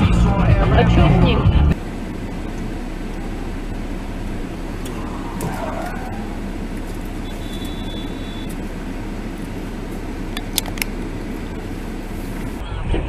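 A car's engine and road noise heard from inside the cabin while driving in city traffic, steady and fairly low. A loud voice is heard for about the first two seconds and then cuts off suddenly. Near the middle there is a brief high steady beep, and a few light clicks come near the end.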